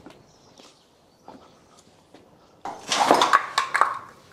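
Faint scattered clicks, then about two and a half seconds in a louder burst of metal clinking and clattering from tools and engine parts being handled.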